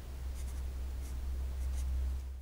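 Marker pen writing on paper: a few short, faint strokes about half a second in and again near the end, over a steady low hum.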